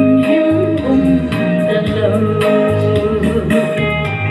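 A woman singing into a handheld microphone over amplified musical accompaniment with guitar and a bass line.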